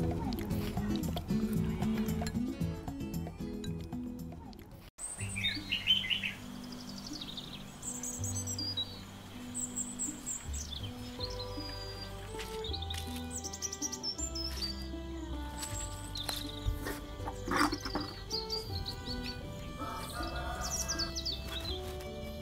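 Background music of steady held notes, with small birds chirping over it at intervals. The music breaks off sharply about five seconds in and picks up again.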